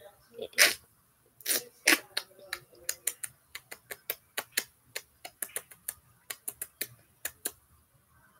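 A quick series of sharp clicks, about two or three a second, running until near the end, with a brief low voiced sound among them early on.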